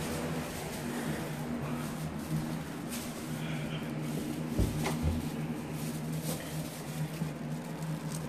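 Indoor room tone with a steady low hum, plus rubbing and knocking from a handheld phone being carried between rooms. A low thump comes about halfway through.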